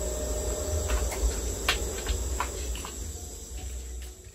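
Steady background ambience: a constant high-pitched whine over a low hum, with a few faint clicks, sinking in level near the end.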